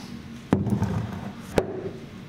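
Two sharp wooden knocks about a second apart as wooden resin-casting molds are set down on a wooden workbench.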